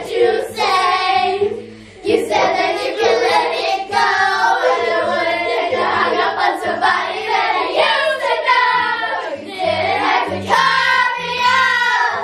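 A group of children singing loudly together over a musical accompaniment with a moving bass line.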